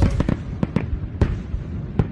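Fireworks bursting: a rapid, irregular run of sharp pops and crackles over a low rumble.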